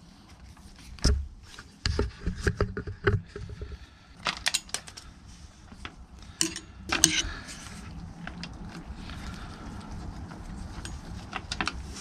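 A run of sharp metallic clinks and knocks, like keys and small metal parts being handled. From about seven seconds in there is a steadier hiss of heavy rain behind them.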